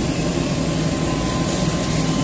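JCB tracked excavator's diesel engine running steadily under load as the machine climbs onto a flatbed truck's deck, with a faint steady high whine above the low engine hum.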